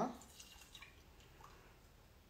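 Milk being poured into a saucepan, heard only as faint liquid sounds.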